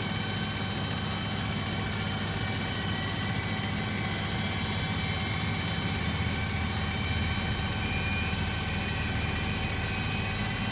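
Pratt & Whitney JT8D turbofan on a 737-200 being dry-motored by its pneumatic starter, turning over with no fuel or ignition at low RPM: a steady low hum with a faint whine above it, heard from the cockpit.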